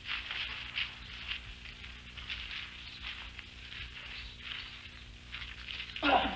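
Scuffling of a staged fistfight in a dirt street: a string of short, irregular scrapes, shuffles and light hits, over a steady low hum in the old soundtrack.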